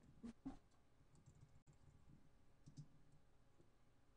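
Near silence, with a few faint clicks: two close together just after the start and a softer pair a little before three seconds in.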